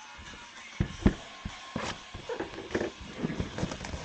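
Handling noise from a cardboard trading-card box and cards being moved on a table: a scatter of light knocks and clicks, with background music playing faintly underneath.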